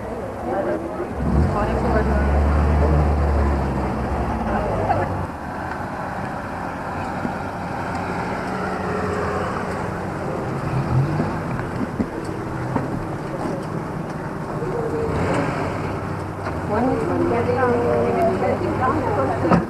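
A car's engine running as the car pulls up, a low hum loudest from about a second and a half in to about five seconds, with people talking over it.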